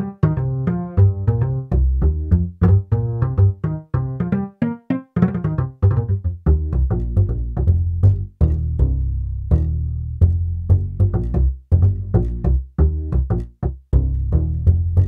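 GarageBand for iPad's Upright bass sound, played from the on-screen keyboard: a steady run of plucked double-bass notes, several a second, each dying away quickly.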